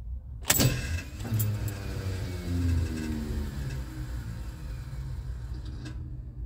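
Carbureted car engine started on the key: it catches with a sharp burst about half a second in, the revs fall over the next couple of seconds, then it settles into a steady idle.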